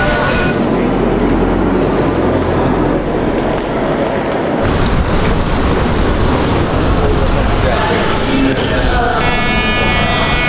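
Busy city street ambience: indistinct crowd chatter over a steady traffic rumble. Near the end a higher pitched sound comes in.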